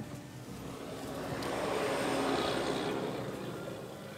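Pickup truck driving, heard from inside the cab: engine and tyre noise that swells up for a couple of seconds and dies away again.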